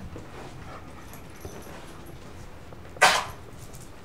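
A dog barks once, a single short bark about three seconds in.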